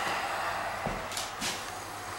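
A few light knocks over a steady background hiss.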